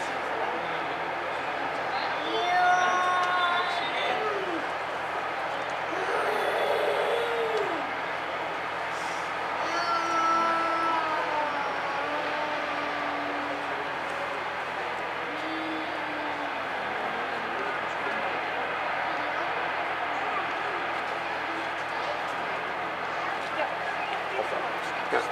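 A few people talking off-mic over a steady background noise, with short stretches of speech every few seconds.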